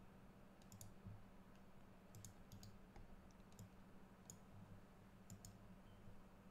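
Faint computer mouse clicks, about a dozen at irregular intervals, over a steady low hum.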